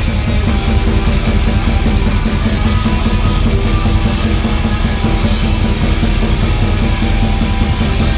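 Metal band playing live and loud: electric guitar over a drum kit in a dense, unbroken wall of sound.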